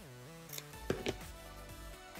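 Background music with steady held notes, with a few short handling clicks from ribbon and scissors on the work mat a little after half a second and about a second in.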